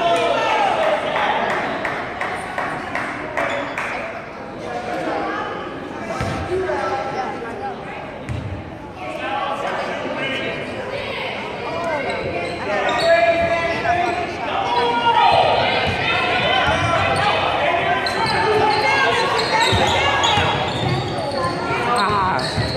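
Basketball bouncing on a hardwood gym floor, a few separate thuds, under steady spectator chatter in a large, echoing gym.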